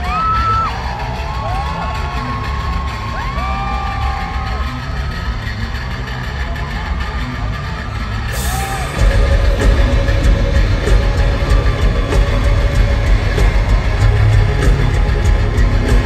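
Rock band playing live, recorded from the audience, with the crowd whooping and yelling over a quieter passage. About nine seconds in, the full band comes in much louder.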